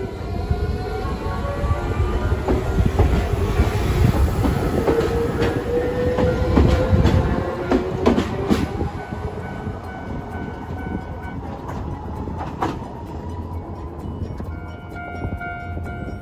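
Hiroden 3950-series 'Green Liner' tram passing close by: a low rumble with a rising motor whine, and wheels clicking over rail joints, loudest in the middle, then fading as it moves away.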